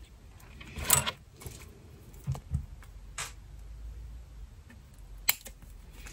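Handling noise from a slingshot band set of flat latex bands and pouch being turned over in the hands: a few scattered light clicks and rustles, the sharpest about five seconds in.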